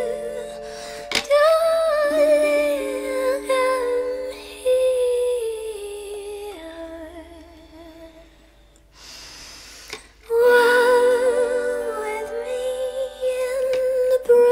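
Wordless female humming with a wavering vibrato over sustained chords from a plucked autoharp. About seven seconds in the sound fades to a quiet lull with a brief breathy hiss, and about ten seconds in the humming returns strongly.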